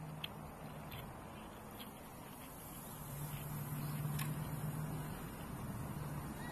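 Outdoor background noise with a steady low hum that grows louder from about three seconds in, and a few faint ticks.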